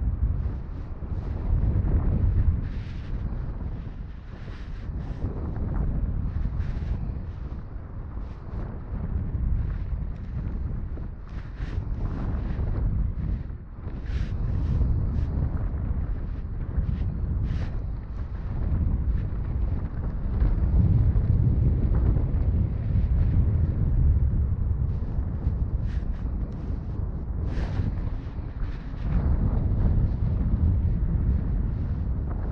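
Wind buffeting a microphone, a low rumble that swells and fades irregularly, with scattered short scrapes of fabric rubbing against it.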